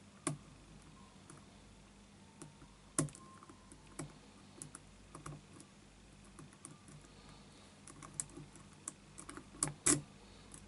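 Lock pick clicking and scraping against the pins of a six-pin Yale euro cylinder lock held under a tension wrench during picking: scattered light metallic clicks, with sharper ones about three seconds in and a cluster near the end.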